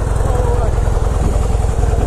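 2015 Harley-Davidson Breakout's 1690 cc (103 cubic inch) air-cooled V-twin idling with a steady, even low pulsing.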